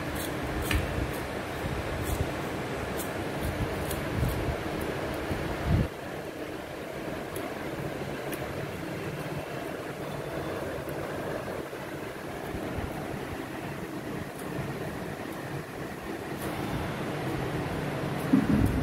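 Beagle licking ice cream out of a stainless steel bowl: small scattered clicks and clinks of tongue and muzzle on the steel, busiest in the first few seconds. A steady background hum runs underneath.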